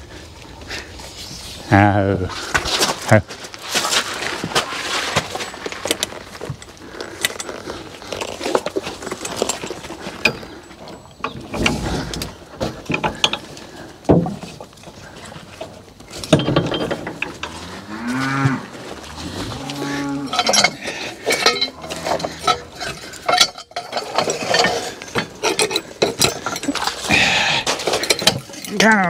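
Harness and trace-chain hardware clinking and rattling as a hitched draft-horse team shifts about at a sled, with a few long, low drawn-out calls partway through.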